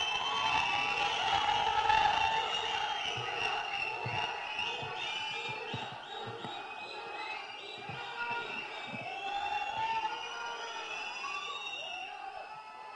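An audience cheering and shouting, many voices overlapping, a little quieter from about halfway through.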